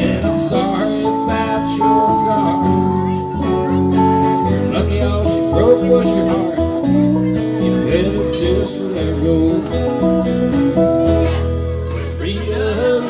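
Instrumental break in a country song: a band led by guitar, over bass and a steady beat.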